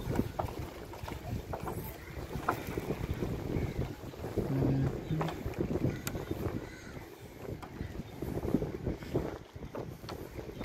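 Wind buffeting the microphone as a rough, uneven low rumble, with a few light knocks scattered through it.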